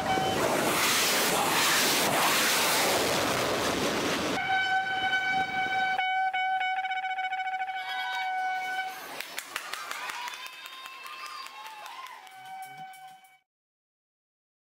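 A loud rushing noise, then a shofar sounding long, steady blasts, with a wavering stretch between them. The last blast cuts off suddenly shortly before the end.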